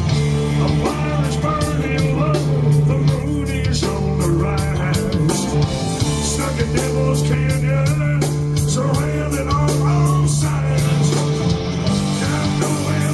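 Live southern rock band playing loud: a bending lead electric guitar line over bass and drums, with cymbals struck in a steady rhythm.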